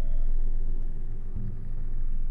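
Deep, steady low rumble from a composed sound-art score, swelling briefly near the end. Faint ringing tones above it die away in the first half second.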